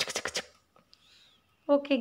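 A quick run of small hard clicks and rattles in the first half second as miniature toy kitchen pieces are handled, then a woman starts speaking near the end.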